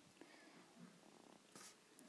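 Near silence: room tone with a few faint soft noises.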